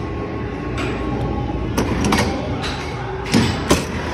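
Four sharp clacks from a Big Bass Wheel arcade redemption game as its wheel is spun, the last two the loudest, over the steady din of a busy arcade.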